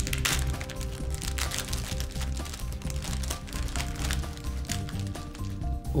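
Background music with a steady beat, over the crackle and crinkle of a sterile surgical glove's outer peel pouch being pulled open by hand.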